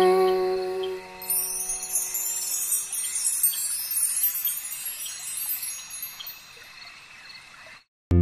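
Held closing chord of a children's song dying away, then a twinkling high chime shimmer like wind chimes that slowly fades out.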